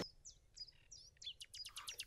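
Faint birds chirping: short, high chirps that slide downward, then a quick run of several chirps in the second half.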